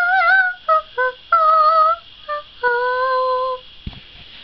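A child singing a short tune in a high voice: a held note, a few quick short notes, then a long wavering note near the end.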